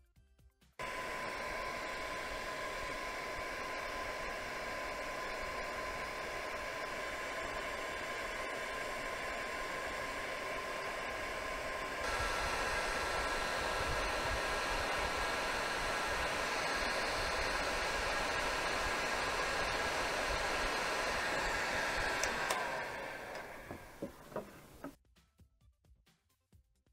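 Hot-air heat gun blowing steadily with a fan whine. About halfway through it steps up to a louder setting with a higher whine. Near the end it is switched off and the whine falls as the fan spins down.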